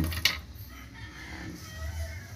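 A sharp knock of a lump of wood charcoal being set down or bumped, then a rooster crowing faintly in the background.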